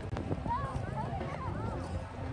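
Footsteps of people walking on a concrete sidewalk, with voices in the background that rise and fall briefly in the middle.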